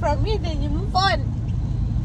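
Steady low road rumble inside a moving car's cabin. A woman's voice rises and falls briefly over it in the first second or so.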